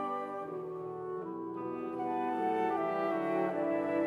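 Instrumental interlude of orchestral accompaniment: sustained, brass-like chords that move to a new chord about once a second, with no voice.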